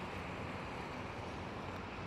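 Steady outdoor background noise: an even hiss over a low rumble, with no distinct events.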